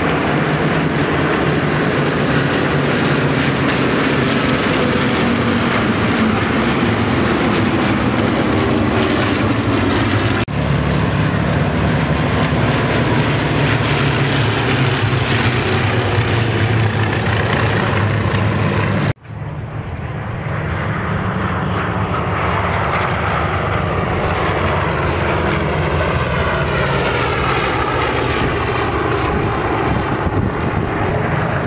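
Several piston-engined F4U Corsair fighters flying over in formation: a loud, continuous drone of radial engines and propellers, its pitch sliding in the last third as they pass. The sound breaks off abruptly twice, about 10 and 19 seconds in, at cuts in the recording.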